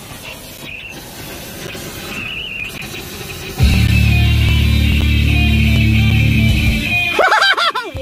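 Quiet car-interior noise, then a song starts suddenly about three and a half seconds in, with a heavy bass line; a voice comes in near the end.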